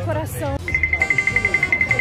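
Rapid electronic beeping at one steady high pitch, about nine beeps a second, starting less than a second in, over background music.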